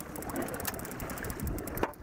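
Trolling boat on choppy lake water: a steady wash of waves and wind with a low rumble, and two sharp knocks, about a second apart.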